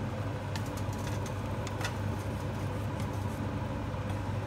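A steady low hum, like a running motor or fan, with a few faint light clicks scattered through it.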